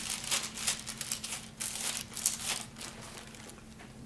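Bible pages being leafed through: paper rustling and crinkling in quick, uneven strokes that die away near the end.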